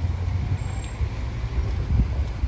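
Road traffic noise from a queue of cars in a jam: a steady low rumble of engines and tyres.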